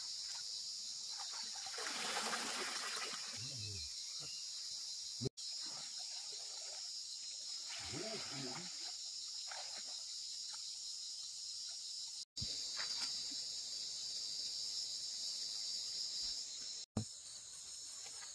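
A steady, high-pitched chorus of insects, with water sloshing and splashing as someone wades and works by hand in a shallow stream. The sound cuts out briefly three times.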